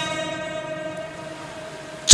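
Sermon public-address system ringing through a pause in the speech: a steady pitched tone with an echoing tail fades slowly and evenly as the last words die away in the loudspeakers.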